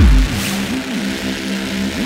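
Techno track in a drumless stretch. A deep sub-bass note ends just after the start, then a synth bass line bends up and down in pitch about twice a second over a held low tone.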